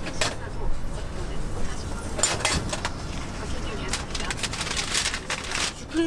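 Clicks and scraping from work at a taiyaki griddle's blackened cast-iron molds, coming in clusters about two seconds in and again through most of the last two seconds, over a low steady street hum.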